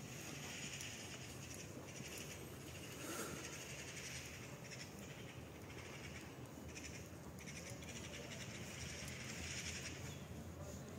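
Repeated animal calls, each lasting about a second, over a steady low background rumble.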